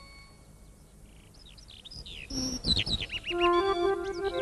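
Soundtrack birds chirping and twittering in quick, high calls starting about halfway through, with a brief low rush alongside the first calls. Music fades out at the start and comes back in near the end.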